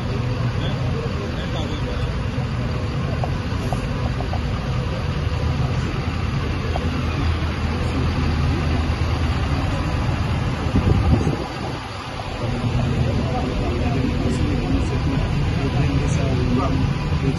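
Engine of a Roshel armoured vehicle idling steadily close by, with a low rumble and a brief louder swell about eleven seconds in.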